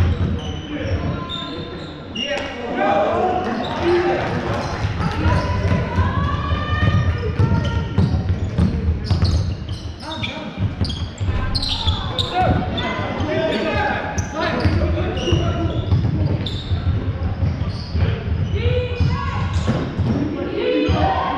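Basketball being dribbled on an indoor court during play, its bounces mixed with players and coaches shouting, all echoing in a large sports hall.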